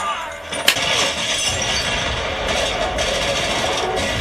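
Soundtrack of a TV drama's action scene: a sharp crack under a second in, then a dense, continuous crash-like noise that carries on to the end, with music faint underneath.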